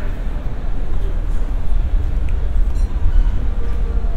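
Airport terminal ambience: a steady low rumble filling the hall, with a faint background murmur.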